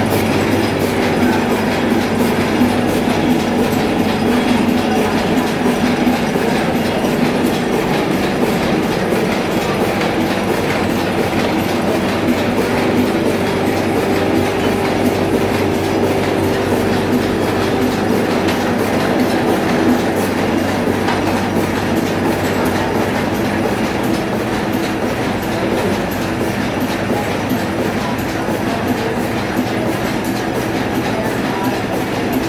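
Solna 225 Plus sheet-fed offset printing press running: a loud, steady, rapid mechanical clatter over a constant hum.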